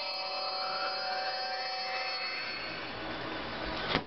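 Sustained electronic synth tones with a slow rising sweep, fading out as a techno intro ends.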